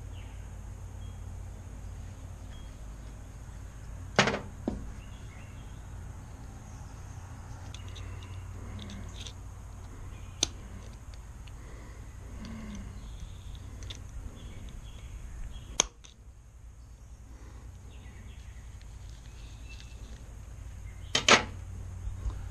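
Small metal fishing-reel parts being handled and fitted back together during reassembly of an old Daiwa reel: a few sharp, isolated clicks several seconds apart and faint fiddling noises, over a steady low background hum.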